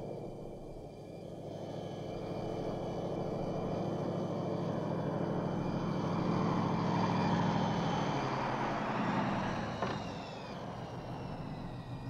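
Car engine of a Pontiac Firebird Trans Am driving up and coming to a stop. It grows louder as the car approaches, then its pitch falls as it slows, with a faint click near the end.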